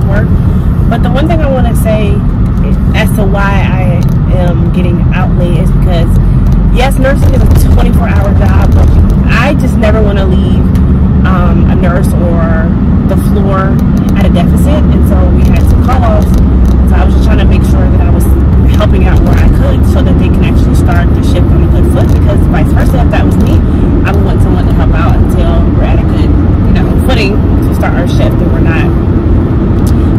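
A woman talking inside a moving car, over the steady low rumble of road and engine noise in the cabin.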